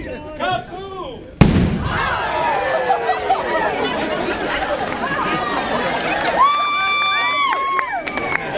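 Voices chanting the last seconds of a countdown, then a single loud blast about one and a half seconds in, followed by a crowd cheering and yelling. Near the end, a couple of long, high, held calls ring out over the cheering.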